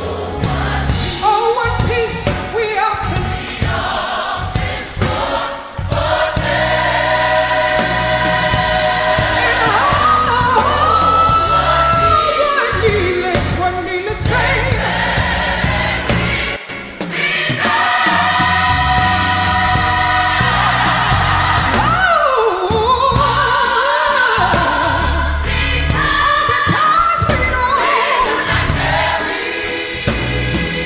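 Gospel song with choir singing over instrumental accompaniment.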